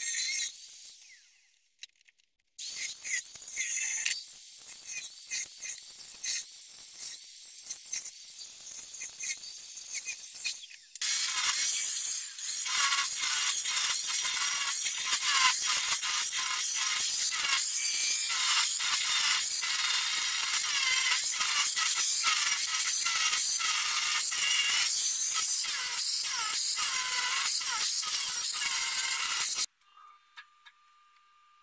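Angle grinder cutting the brackets off a metal basketball hoop: a harsh, high-pitched hiss full of fast scratchy rasps. It comes in bursts, stopping at about a second and a half, starting again near two and a half seconds and getting much louder from about eleven seconds.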